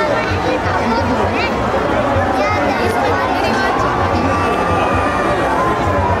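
A large outdoor crowd's voices and high calls, over loudspeaker music with a steady low beat and a held tone in the second half.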